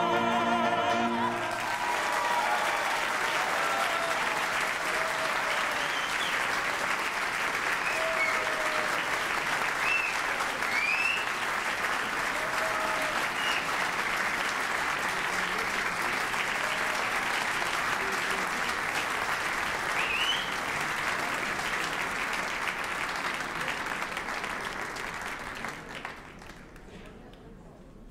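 The last held note of an operatic vocal duet, sung with vibrato, ends about a second and a half in. A large audience then applauds with scattered cheers, and the applause dies away near the end.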